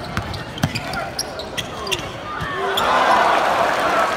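A basketball being dribbled on a hardwood court, its bounces coming as sharp thuds with sneaker squeaks in between. Near the end a louder rush of noise builds up.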